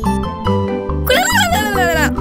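Children's cartoon background music with a steady repeating bass beat; about a second in, a cartoon cat character's wavering, meow-like vocal call comes in over it.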